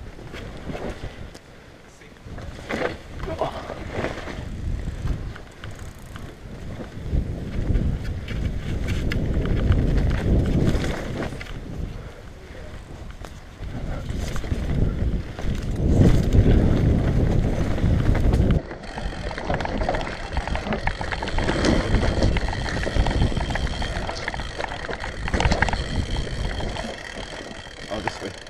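Mountain bike ridden fast down a rough dirt forest trail: tyres rumbling over dirt and roots while the bike rattles, the rumble swelling and fading with the terrain and broken by sharp knocks.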